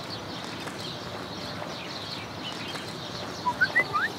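Birds chirping over a steady outdoor background hiss, with a few short, louder rising chirps near the end.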